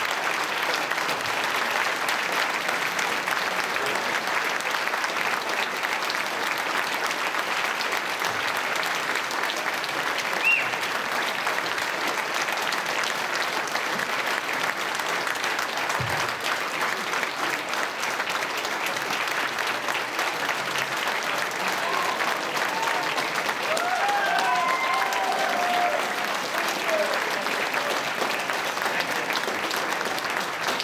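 Long, steady applause from a large audience, with a few voices calling out near the end.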